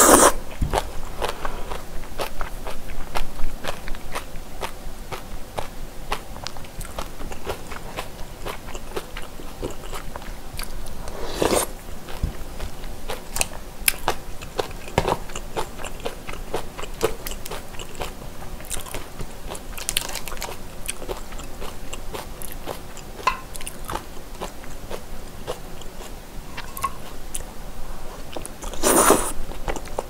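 Close-miked eating of spicy boneless chicken feet in broth: wet chewing with many small clicks and crunches. There are louder slurps at the start, about 11 seconds in, and near the end.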